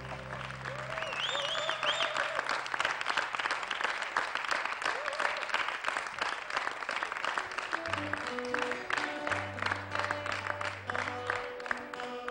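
Concert audience applauding, with a few whistles, as the band's final held chord dies away. From about eight seconds in, bass and plucked-string notes sound again under the clapping.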